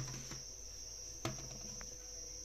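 Steady high-pitched chirring of crickets, with two brief knocks about a second apart as the metal baking tray is handled.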